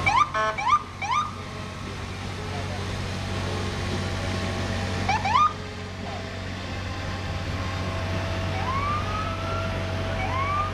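Ambulance electronic sirens give short bursts of quick rising chirps, a cluster at the start and another about five seconds in, then a slower rising whoop near the end. Underneath is a steady low hum of vehicle engines.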